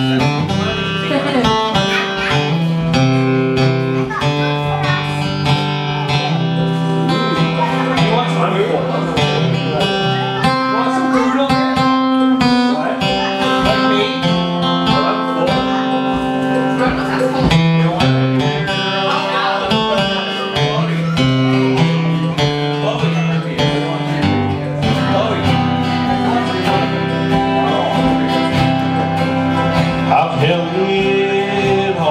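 Live band playing an instrumental passage: two acoustic guitars strummed over a steady drum beat from an electronic drum kit, with no singing yet.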